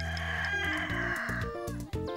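A rooster crowing once, a long call of about a second and a half that tails off, over background music.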